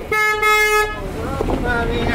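A vehicle horn sounds one steady, single-pitched honk lasting under a second at the start. Voices follow.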